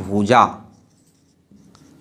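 A man's voice ends a phrase, then a marker writes on a whiteboard, its strokes faint in the last half second.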